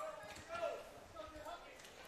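Faint voices of people around a baseball field, talking and calling at a distance.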